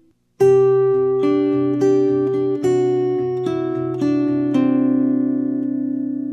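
Acoustic guitar fingerpicked slowly in a Travis-picking pattern, starting about half a second in: the thumb keeps a steady bass while a melody line walks down from the B string to the G and D strings, about two notes a second, the notes ringing over one another.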